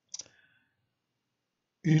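A single short click just after the start, with a brief ringing tail, followed by silence until a man's voice begins near the end.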